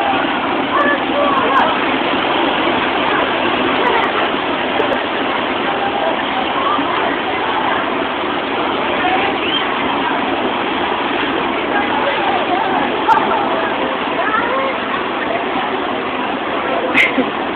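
Steady rush of air from the blower-driven wind table, blowing up through its round floor grate, with no change in level.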